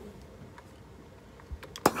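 Low handling noise of a steam iron held pressed on a wool pressing mat, with no steam, then a few short clicks near the end, one of them sharp, as the iron is handled.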